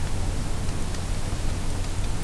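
Steady hiss of microphone and recording noise, with a low hum underneath.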